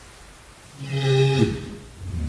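A walrus giving one low call about a second in: it holds a single pitch for under a second, then drops away at the end.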